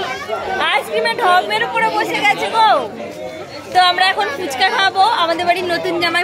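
Voices talking over one another in a crowd: chatter of several people close by, with no other distinct sound.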